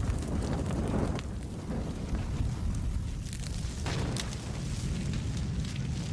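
Bushfire burning: a steady deep rumble with scattered sharp crackles and pops.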